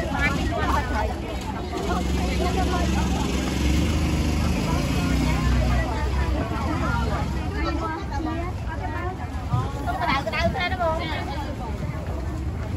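Chatter of voices around a street-food stall, with a motor vehicle's engine passing by. The engine is loudest from about two to seven seconds in.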